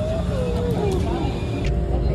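A song with a sung vocal melody of held, gliding notes, cut off by an edit about a second and a half in, after which a low rumble comes in.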